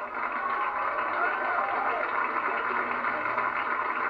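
Studio audience laughing, a steady wash of many voices at once.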